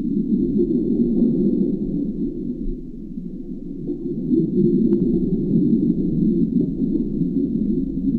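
Steady low rushing underwater noise, as picked up by a camera in an underwater housing, with a faint thin high tone running through it.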